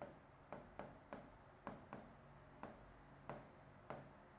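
Faint stylus writing on an interactive board's screen: about ten light, irregular taps as each stroke of the figures is drawn.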